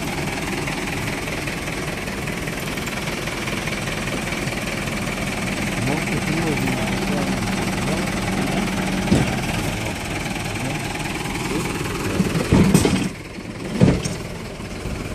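Truck engine idling steadily, with faint voices under it. A couple of sharp knocks come near the end, and the engine noise briefly drops away just before the end.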